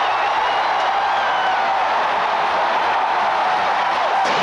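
Large stadium crowd cheering steadily after the home team's safety, with a few thin high whistles in the first second and a half.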